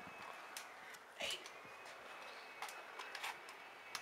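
Faint steady hiss with a few brief knocks and clicks as a wooden front door is opened and a person steps out on aluminium forearm crutches; the loudest knock comes about a second in.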